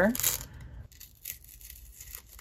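A paper sticker being peeled off its backing by hand: a short papery rip just after the start, then faint rustling of the sticker paper.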